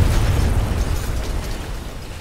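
A trailer sound-design impact: a sudden loud boom with a deep rumble that slowly fades away.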